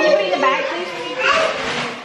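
A toddler and women talking over each other, with a short rustle of gift wrapping paper a little after halfway.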